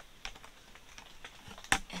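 Light plastic clicks and taps as a green plastic funnel piece is handled and pressed into a slit in the rim of a plastic five-gallon bucket, with one sharp, loud click near the end.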